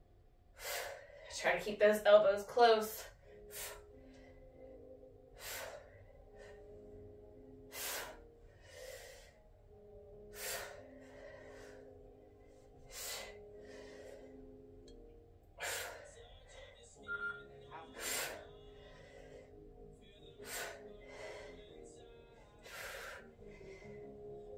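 A woman's short, forceful breaths during kettlebell reps, evenly spaced about every two and a half seconds, over background music. About two seconds in there is a louder short vocal sound.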